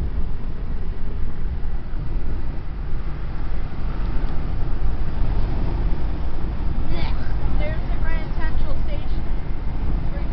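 Steady road and engine rumble heard inside a car moving along a highway. An indistinct voice comes in about seven seconds in.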